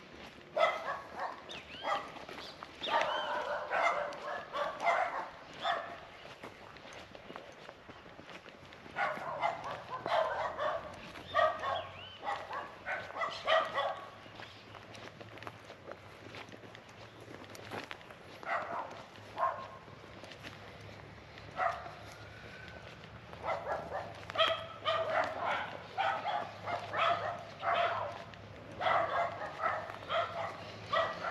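Dogs barking in repeated bouts, runs of quick barks separated by pauses of a few seconds.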